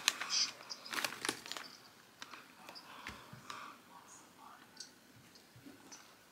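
A foil Doritos chip bag being handled after opening, with faint crinkles and crackles. They come thickest in the first two seconds, then thin to a few scattered ticks.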